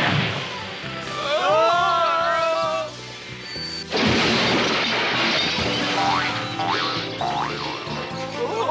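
Cartoon sound effects over background music: a crash as a felled tree comes down across the railway track at the start, a wavering pitched cry in the following seconds, and a sudden loud smash about four seconds in.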